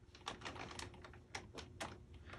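Stylus tip tapping and scratching on a tablet's glass screen during handwriting: an irregular run of faint, light ticks.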